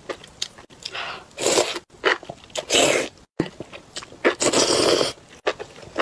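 Close-miked eating of spicy enoki mushrooms in chilli sauce: three drawn-out slurps, with short wet clicks and smacks of chewing between them.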